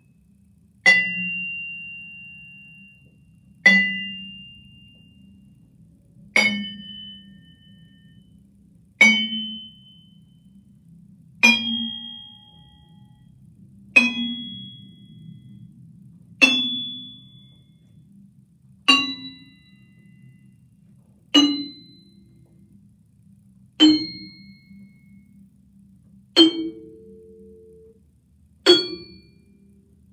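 Multiphonic harmonics on the lowest octave of a Musser vibraphone. A yarn mallet strikes each bar near its edge while a finger lightly touches it about 30% from one end, so each note rings as a complex chord of harmonic and non-harmonic tones. There are twelve single strikes about every two and a half seconds, stepping up bar by bar, each ringing and dying away before the next.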